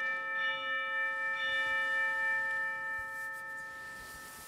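Altar bell rung at the elevation of the chalice during the consecration. The bell is struck again about half a second in and once more about a second and a half in, its tone ringing on and slowly fading.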